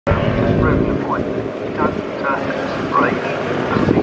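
Yamaha FZ750 race bike's inline-four engine running at idle, heavier and louder in the low end for about the first second.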